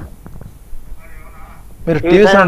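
A faint, thin voice coming over a telephone line for under a second, about a second in, with a few soft clicks on the line before it.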